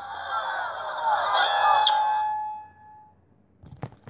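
A voice from the animated story's sound track, with curving pitch, fading out over about three seconds, then a few sharp clicks near the end.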